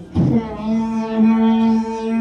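A human voice imitating a synthesizer through a microphone: a short low swoop, then one long steady held note with many overtones, like a synth drone.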